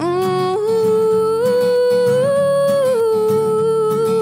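Female voice singing a long wordless held note over acoustic guitar, climbing in small steps and dropping back down about three seconds in.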